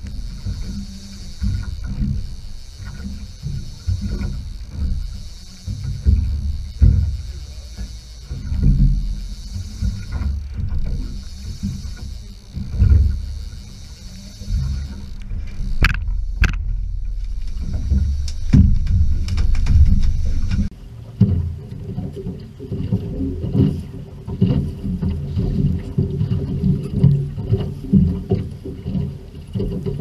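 Rough, uneven wind and water noise of a small boat at sea, under a music track that cuts out abruptly about two-thirds of the way through.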